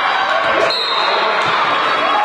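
A basketball bouncing on a hardwood gym court during play, over the voices and chatter of players and a small crowd in a reverberant hall. A brief high squeak comes a little before the middle.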